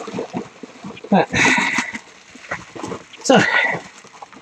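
Bubble wrap rustling and crinkling in irregular short crackles as it is handled and pulled open.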